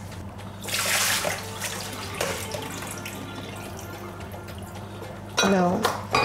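Soaked basmati rice and its water poured through a metal sieve into a stainless steel sink as the rice is drained. There is a loud rush of water about a second in, then a quieter, steady draining.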